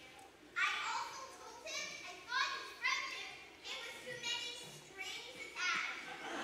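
A child's high-pitched voice speaking lines in short phrases, echoing in a large hall.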